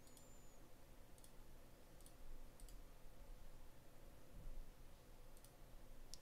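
A few faint, scattered computer mouse clicks over near-silent room tone.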